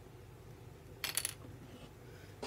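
A brief clatter of several small hard clicks about a second in, like small hard objects clinking together, over faint room tone.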